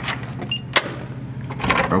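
Hotel room keycard door lock accepting a card: one short high beep about half a second in, then a sharp click of the lock releasing.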